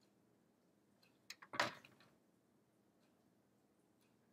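Near silence: quiet room tone, broken about a second in by a couple of faint clicks and then one short, soft noise.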